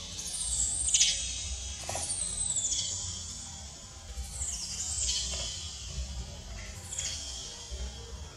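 High-pitched squeaks from a newborn baby monkey, each one falling quickly in pitch; about six come at irregular intervals.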